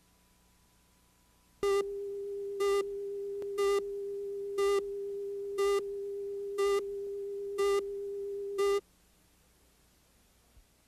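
Broadcast tape leader: a steady line-up tone with a louder short beep about once a second, eight beeps in all. It starts a little over a second in and cuts off suddenly near the end.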